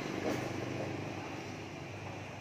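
Honda Wave 100 motorcycle's single-cylinder four-stroke engine idling steadily, running smoothly.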